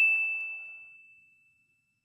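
A logo-sting chime sound effect: one high bell-like ding rings out as a single steady tone and fades away over about a second and a half.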